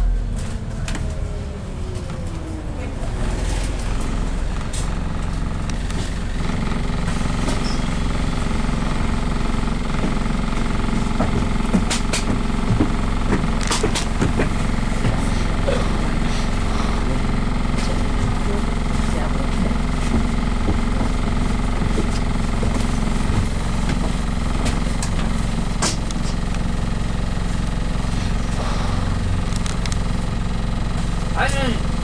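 Double-decker bus engine heard from inside the upper deck: its pitch falls as the bus slows in the first couple of seconds, then it runs at a steady idle. A few sharp clicks or rattles come from the bodywork.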